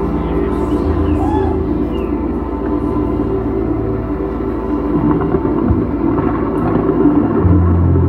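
Electric guitars through amplifiers holding a sustained, ambient drone of ringing notes over a steady low hum; a louder low tone swells in near the end.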